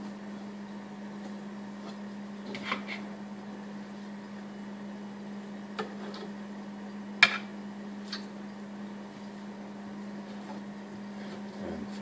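A knife slicing raw flounder on a cutting board, the blade tapping the board four times in sharp clicks, loudest about seven seconds in, over a steady low hum.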